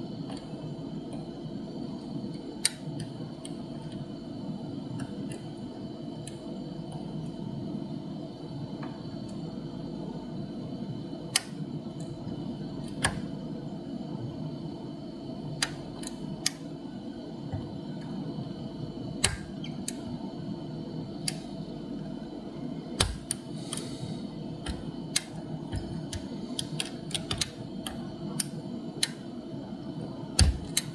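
Small, sharp metallic clicks of a dimple pick working the pins of a seven-pin brass dimple-key euro cylinder under tension. The clicks come every few seconds at first and crowd together near the end, over a steady low hum.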